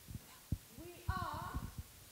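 A few low thumps, then from about a second in a young person's voice calling out with its pitch sliding up and down, more thumps mixed in.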